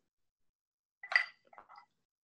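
A glass salad bowl clinks once about a second in, with a short ring, as chopped green onion is scraped into it from a small glass bowl. A few faint light taps follow.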